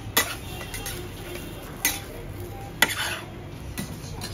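Flat metal scraper knocking and scraping on a round metal jianbing griddle while the pancake is folded: three sharp clicks about a second apart, then a softer one near the end, over a low steady background.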